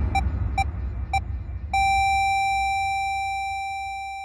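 Heart-monitor beeps: three short beeps coming further apart, then a long unbroken flatline tone from about two seconds in that slowly fades, over a fading low rumble. The slowing beeps running into a flatline signal the heart stopping.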